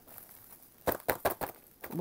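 Clear plastic bags rustling as hands handle small plastic embossing-powder jars and a plastic case, with a quick run of sharp clicks and taps about a second in.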